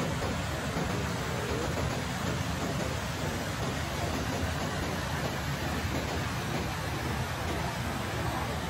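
McDonald Creek's clear mountain water rushing over rock ledges and through small rapids, a steady, unbroken rush.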